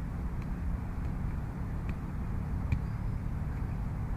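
Steady low outdoor rumble, broken by a few faint sharp taps; the clearest tap comes about two-thirds of the way in.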